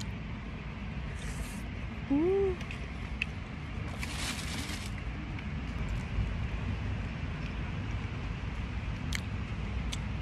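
A person eating takoyaki outdoors, with a steady low rumble of wind on the microphone. About two seconds in comes a short 'mm' hum that rises and falls in pitch. About four seconds in there is a brief hiss, and faint clicks of chewing are scattered through.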